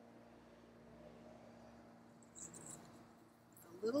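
Electric potter's wheel running with a faint steady hum while wet hands and a damp cloth work the spinning clay, with a brief soft sound a little over two seconds in.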